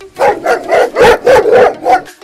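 Angry dog barking, about six loud barks in quick succession.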